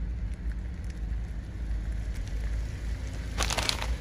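A car rolling slowly across asphalt, a steady low rumble of engine and tyres, with a short crackling burst near the end.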